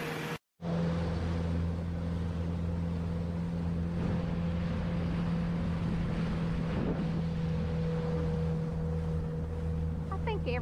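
Outboard motor of a small jon boat running steadily at speed under way, a constant-pitch hum over the rush of water and wind. The sound cuts out briefly about half a second in.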